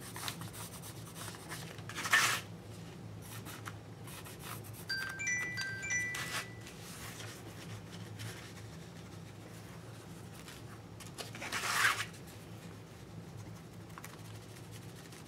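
Stabilo pencil rubbing and scratching along the edges of a collaged canvas board, with two louder rubbing strokes, one about two seconds in and one near the end. A brief run of bright chime-like notes sounds about five seconds in, over a steady low hum.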